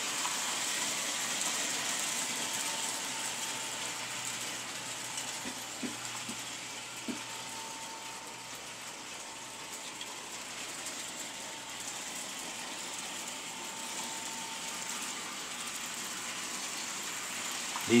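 American Flyer S-gauge twin Alco diesel freight train running around an oval of sectional track with a steady whirring rush of motors and wheels. It is louder while the train runs near by at the start and end and fainter in the middle as it goes along the far side, with a couple of light clicks about six and seven seconds in.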